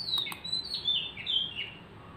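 A bird singing: a quick run of short chirping notes stepping down in pitch over about a second and a half.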